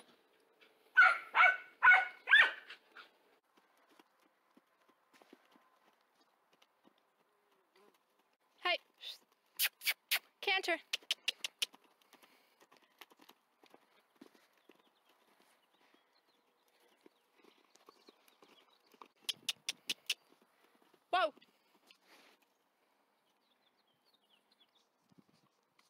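A horse moving about a dirt pen, with two runs of quick sharp clicks, one around the middle and one near the end. Brief voice-like sounds come at the start, and a short falling call comes shortly before the end.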